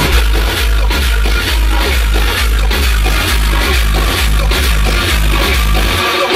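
Electronic music with a heavy, pulsing bass beat played loud through a customised Volkswagen Beetle's car audio system with Kicker door speakers.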